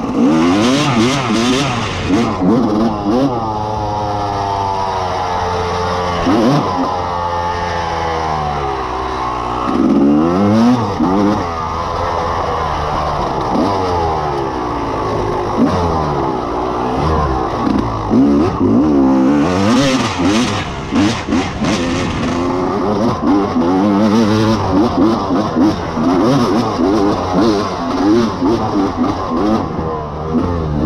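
Dirt bike engine revving up and down over and over as the throttle is worked, its pitch rising and falling continually. Spells of rattling come in near the start and again about twenty seconds in.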